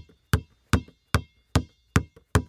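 A basketball being dribbled: five even bounces, about two and a half a second, each a low thud with a short ring.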